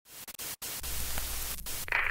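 Radio-style static hiss that cuts out twice for a moment, with a low steady hum joining under it. Just before the end a brighter band of noise comes in, leading into a mock emergency-broadcast announcement.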